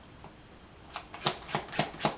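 A deck of tarot cards being shuffled by hand, starting about a second in as a run of quick sharp clicks.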